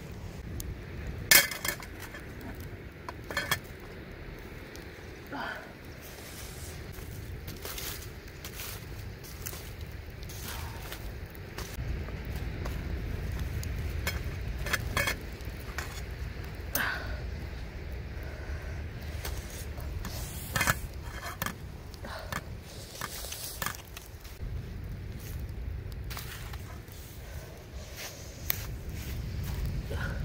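Stainless steel cooking pot, lid and wire bail handle clinking as the pot is lifted and shifted on a wood campfire to bring it down from high to medium heat. Scattered sharp metal clinks over a low rumble.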